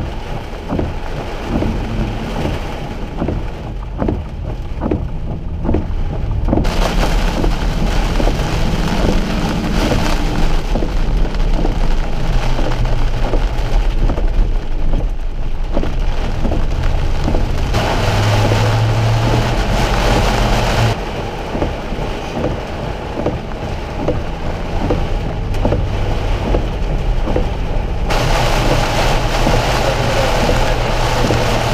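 Heavy rain pelting a moving car's windshield and roof, heard from inside the car, with a low rumble of engine and road noise underneath. The sound changes abruptly several times as separate stretches of driving are cut together.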